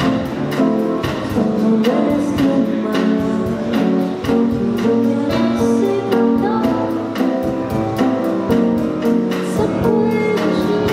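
Live acoustic guitar playing a steady plucked accompaniment, with a voice singing over it into a microphone.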